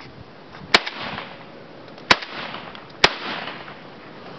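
Three shotgun shots, a second or so apart, each a sharp bang followed by a short rolling echo.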